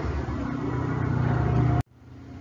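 A low, steady engine-like hum, as of a motor vehicle, growing louder and then cut off suddenly near the end.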